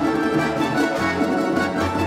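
Russian folk-instrument orchestra of balalaikas and domras playing a rhythmic plucked and tremolo passage over held bass notes from a contrabass balalaika and a double bass. The bass line shifts to a new note about a second in.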